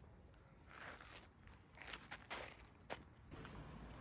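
Faint footsteps and rustling of a rain poncho and backpack, with a few light clicks about two to three seconds in.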